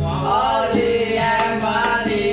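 A man singing a Javanese ngapak song, his long notes sliding up and down in pitch.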